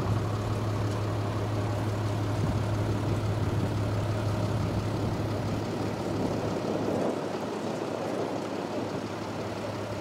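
Steady low engine hum, as of an idling motor vehicle, under even outdoor background noise.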